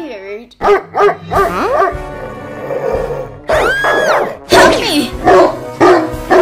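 A person's wordless pained whimpering and moaning cries with gliding, rising-and-falling pitch, over background music.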